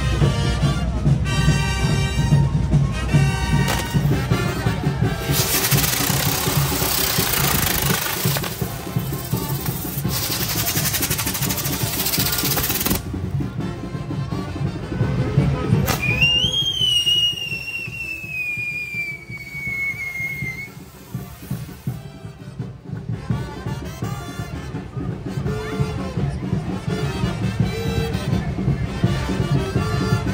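Music with a steady beat from a street procession. Over it, fireworks hiss loudly for several seconds; about halfway through, a crack is followed by a long whistle that falls slowly in pitch for about five seconds.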